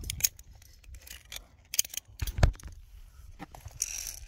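Sharp metal clicks and clacks of via ferrata lanyard carabiners being unclipped and clipped onto the steel safety cable. A handful of single clicks are spread through it, and the loudest, with a thump, comes a little past halfway.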